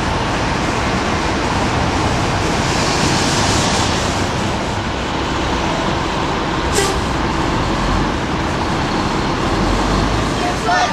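Steady traffic noise of cars driving along a city street.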